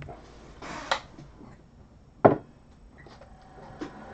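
Trading cards being handled on a tabletop: a brief sliding rustle about a second in, a sharp knock a little after two seconds, and a light tap near the end.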